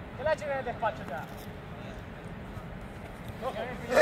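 Men's raised voices calling out during the first second and again near the end, with a quieter stretch of steady background noise between.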